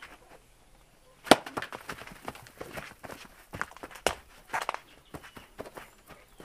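A single sharp knock about a second in, then a run of irregular scuffing footsteps on a dirt floor as people scramble after a goat that has broken loose.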